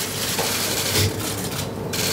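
Dense, continuous clicking of many press camera shutters over a hissing room noise, with no voice.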